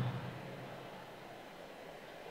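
Faint steady room hiss of a large hall, with the reverberant tail of a man's amplified voice dying away in the first moment.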